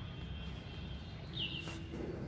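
A bird's single short chirp, falling in pitch, about one and a half seconds in, over a low steady background rumble.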